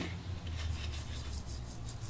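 Toothbrush scrubbing teeth in quick, even back-and-forth strokes, several a second, a rhythmic rasp over a low steady hum.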